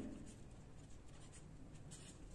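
Faint scratching of a pen writing on paper.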